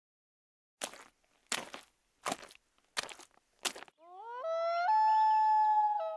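Sound effects of a channel-logo intro: five short sweeping strokes about one every 0.7 s, then a rising call that climbs in two steps and holds a steady pitch.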